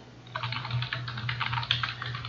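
Typing on a computer keyboard: a quick, uneven run of keystrokes begins about a third of a second in, over a faint steady low hum.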